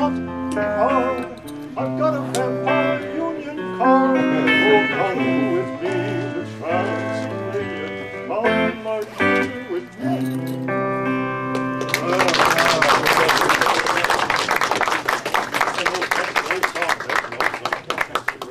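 Electric guitar playing a song while a man sings along with wavering held notes; the song ends about two-thirds of the way through. Then an audience claps for several seconds.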